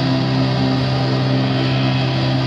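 Live indie rock band playing an instrumental stretch between sung lines: electric guitars and bass holding long sustained notes at a steady level.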